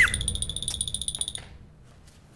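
Electronic comedy sound effect: a short rising blip, then a rapid, high-pitched pulsing beep for about a second and a half that cuts off suddenly.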